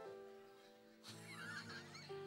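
Soft background keyboard chords held and changing in steps, joined about a second in by high, warbling laughter and squeals from the congregation.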